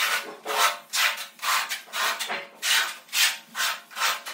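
A yellow-handled hand scraper scraping back and forth along the edge of freshly combed tile adhesive on a concrete floor, in quick, even strokes about two a second.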